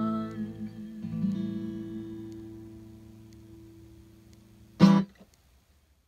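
Final chord on an acoustic guitar ringing out and slowly fading, under the last held sung note, which ends about a second in. The guitar is strummed once more just after that. Near the end there is a short, loud sound, then silence.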